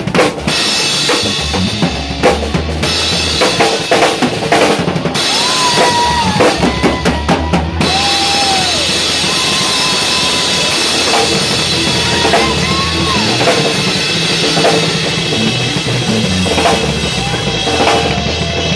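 Live rock band playing, with a drum kit heard up close from the drummer's seat: bass drum, snare and cymbal crashes. Bending electric guitar lead notes and a bass guitar line sound over and under the drums.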